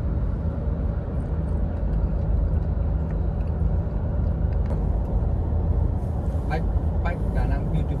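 Steady low drone of a car's tyres and engine heard from inside the cabin while driving at speed. Faint voices come through about six and a half seconds in.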